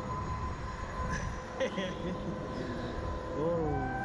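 Wind rushing over the microphone of a camera mounted on a SlingShot reverse-bungee ride capsule hanging high in the air, a steady low rush with a faint steady whine under it. A brief vocal sound from a rider near the end.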